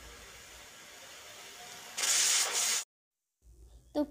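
Pelican aluminium pressure cooker at pressure, letting off steam through its weight valve: a faint steady hiss, then about two seconds in a loud, high-pitched burst of steam hiss lasting under a second that cuts off suddenly.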